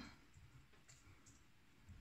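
Near silence, with a few faint clicks from a metal crochet hook working cotton yarn.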